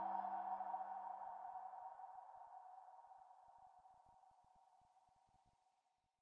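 Electronic logo sting's sustained ringing tone fading out steadily over about five seconds. The lower notes die away first, about two seconds in.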